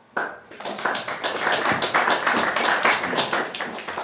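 Audience applause, breaking out suddenly just after the start, with individual claps heard distinctly.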